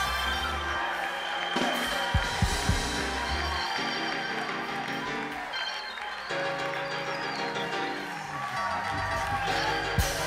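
Church band music under a paused sermon: sustained chords that change every few seconds over a bass line, with a few drum hits near the start.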